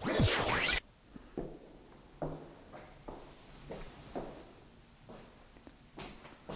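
A loud burst of static-like noise with a falling sweep, under a second long, from a video glitch transition. It is followed by faint, irregular footsteps on a debris-littered floor.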